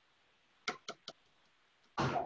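Three quick, light taps of a measuring cup against the rim of a plastic food processor bowl, knocking cocoa powder out of the cup.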